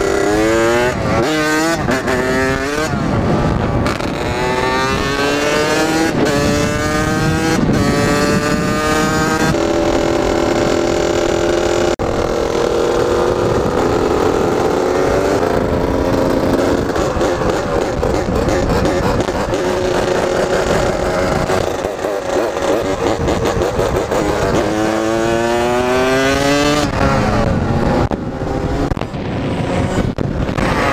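Two-stroke dirt bike engine of a Kawasaki KX80 being ridden hard, revving up through the gears with the pitch climbing and dropping back at each shift several times, then holding a steadier pitch while cruising, before climbing through the gears again near the end.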